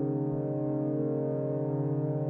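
Sustained electronic drone: a chord of steady low tones held together with no beat.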